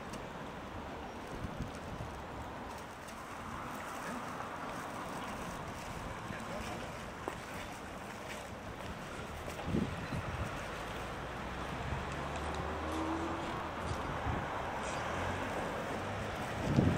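Outdoor background: steady street-traffic noise with some wind on the microphone and faint voices, and a vehicle engine passing in the second half.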